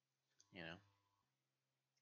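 Near silence broken by a single spoken word from a man about half a second in, with a faint click just before it.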